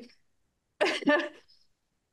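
A woman's short non-speech vocal sound, about a second in and under a second long, amid otherwise silent audio.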